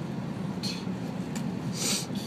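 A plastic zip bag rustling and rubbing as it is handled: two short scrapes, then a louder, longer one near the end. Under it runs the steady low rumble of a car cabin on the move.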